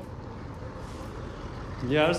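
Diesel coach bus running at close range as it crawls past in slow traffic: a steady low engine rumble.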